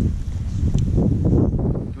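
Wind buffeting the camera microphone: a loud, continuous low rumble.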